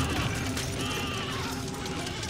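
A massed charge of horse-drawn chariots: a steady rumble of galloping hooves and rolling wheels, with faint cries over it.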